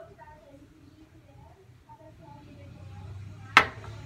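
A full drinking glass set down on a granite countertop, making one sharp clack near the end.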